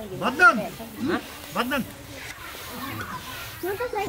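Men's voices in a few short, brief utterances during the first half, followed by a soft hiss.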